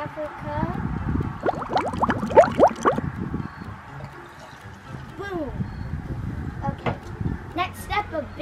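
Liquid poured from a small plastic measuring cup into a plastic cup, trickling and splashing, with the pitch of the pouring sliding quickly up and down about halfway in.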